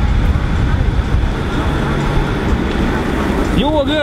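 Wind and road noise from a car driving with its window open, rushing steadily on the microphone. Near the end a voice calls out loudly in a few rising-and-falling shouts.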